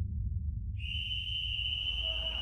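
A long, steady high-pitched whistle starts about three-quarters of a second in, over a low rumble.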